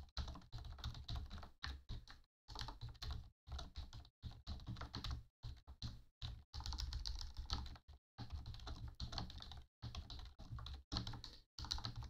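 Rapid typing on a computer keyboard, the keystrokes coming in quick runs separated by brief pauses.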